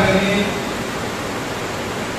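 A man's voice trails off in the first half second, then a steady, even hiss fills the pause.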